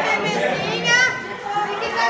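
Voices of a woman and young children talking over one another.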